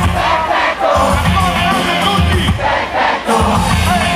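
Live hip-hop concert: the crowd shouting and singing along over the music, with a heavy bass line pulsing underneath.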